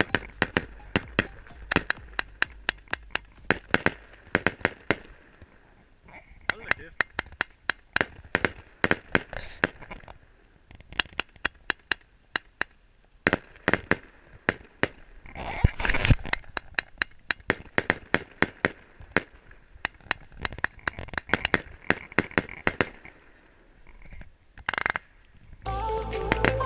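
Fireworks going off overhead: a rapid series of sharp bangs and crackles, several a second, with a louder cluster of bursts about sixteen seconds in and a few short lulls.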